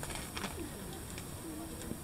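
Faint low cooing of a dove, two short coos over a low background rumble.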